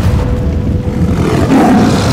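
Trailer music over a deep low rumble from a stampeding herd, then a tiger roaring about one and a half seconds in.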